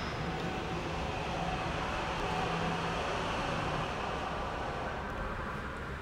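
Jungheinrich EFG 540k electric forklift running: a steady mechanical hum with a faint whine, a little louder for the first four seconds and then easing.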